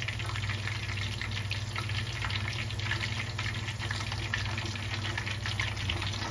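Pork belly deep-frying in hot peanut oil: the oil bubbles and crackles steadily in a dense patter of small pops. A steady low hum runs underneath.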